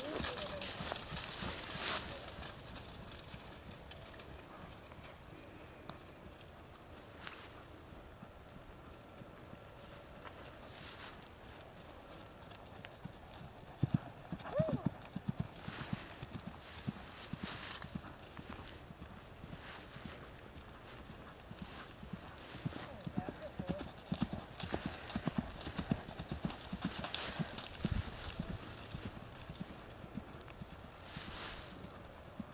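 Ridden horse's hoofbeats on grass at trot and canter, a soft rhythmic drumming that grows louder in the middle and again in the second half.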